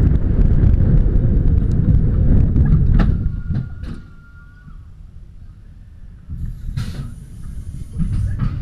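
Bobsled roller coaster train rumbling loudly along its steel track. About three seconds in, a sharp clack as it hits the brakes, and the noise falls away, with a brief steady whine. Near the end the rumble comes back with a hiss as the train rolls into the station.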